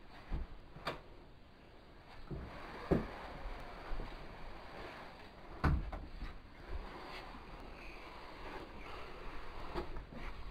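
A person being dragged across a carpeted floor into a closet: soft rustling broken by a handful of thumps and knocks, the loudest about three seconds in and again near six seconds.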